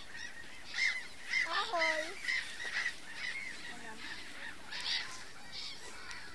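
A flock of gulls calling over water, short harsh cries repeating every half second or so.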